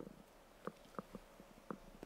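Near silence in a pause between speech, broken by four faint short clicks.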